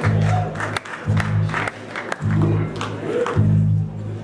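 A live blues band playing a slow blues: low bass notes held in a steady pulse, drum and cymbal strokes, and electric guitar.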